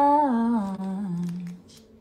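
A woman's voice sings a drawn-out wordless line that steps down in pitch and fades out a little past halfway.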